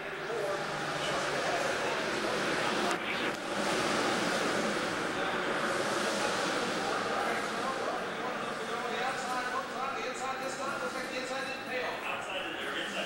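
A pack of NASCAR stock cars running on the track, heard muffled through the suite's window glass as a broad swell of engine noise. It builds about a second in and eases off toward the end, with people talking in the room over it.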